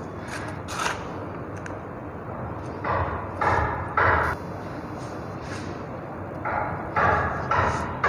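Fingers sprinkling and brushing potting mix over a plastic seedling tray to cover sown seeds. It comes as several short rustling scrapes, bunched near the middle and again near the end.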